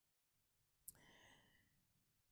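Near silence in a pause of speech, with a faint click about a second in followed by a man's soft breath.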